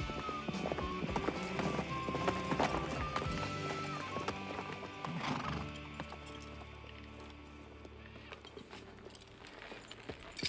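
Horses' hooves clip-clopping over orchestral film-score music, with a horse whinnying about halfway through; the music and hoofbeats fade down in the second half.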